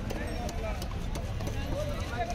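Repeated knocks of a large curved knife chopping through fish, about two or three blows a second, over a background of busy voices.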